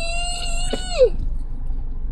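A young child's high-pitched whine, held on one steady note and then trailing down and stopping about a second in: fussing while refusing more of his treat.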